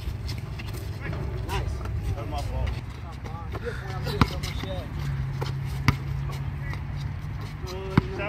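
A basketball bouncing on an outdoor hard court: two sharp single thumps about a second and a half apart, with players' voices and calls in the background.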